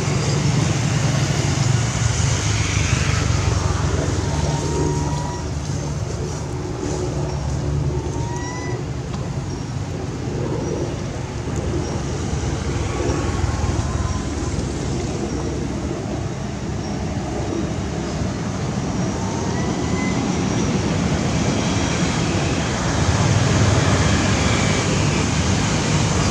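Steady outdoor background noise, a low rumble like distant road traffic, with a few faint short chirps now and then.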